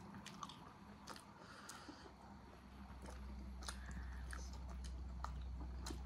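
Faint close-up eating sounds: people biting and chewing soft steamed momo dumplings, with scattered small wet mouth clicks. A low steady hum comes up about halfway through.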